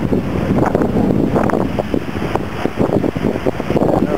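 Loud, gusty wind buffeting the camera microphone, rising and falling in level.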